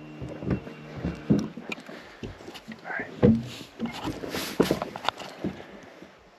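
Irregular knocks and thumps on a small fishing boat, the loudest about three seconds in, with a steady low hum that stops about a second in.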